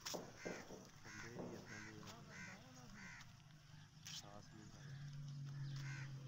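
A bird calling in a run of short repeated calls, about two a second for the first three seconds, over faint background voices. A low steady hum comes in near the end.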